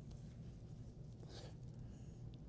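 Faint paper rustle from the pages of a Bible being handled and turned, with one short soft rustle about one and a half seconds in, over a low steady room hum.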